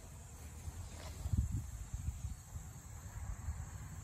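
Faint, uneven low rumble of wind and handling noise on a phone's microphone as it is moved, with a little more buffeting about a second and a half in.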